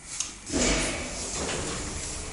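Passenger lift's sliding doors: a click, then a rumbling slide about half a second in, settling into a steady hum.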